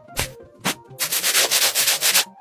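Fingernails scratching skin: two short swishes, then from about a second in a quick run of scratches, about seven or eight a second.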